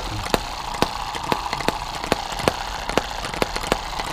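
Eachine EM2 hit-and-miss model engine running, its firing heard as sharp pops about three times a second, unevenly spaced as it fires and coasts, over a steady mechanical whirr.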